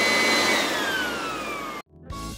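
An edited-in sound effect: a loud rushing hiss with a high whine that holds steady, then slides down in pitch from about half a second in and stops abruptly just before the end.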